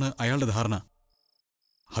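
A man speaking Malayalam dialogue breaks off under a second in. There is about a second of near silence, in which two faint, short, high chirps sound, before speech picks up again at the end.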